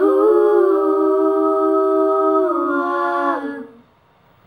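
Female a cappella voice holding one long wordless note, which steps down in pitch near the end and then fades out.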